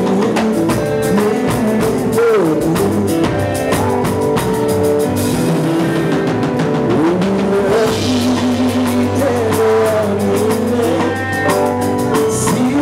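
Live band music with a male lead singer singing into a microphone over a drum kit and bass.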